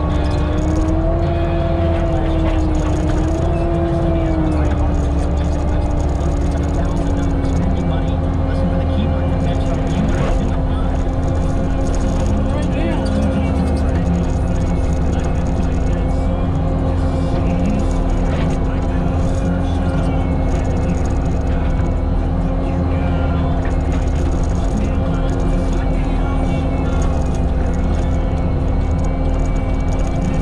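Bobcat T650 skid steer's turbo-diesel engine and Diamond disc mulcher running steadily under load. A steady whine wavers in pitch for the first few seconds, then settles and holds over a constant low rumble.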